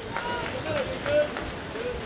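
Several voices calling and shouting out across a swimming pool during water polo play, over a steady wash of splashing water.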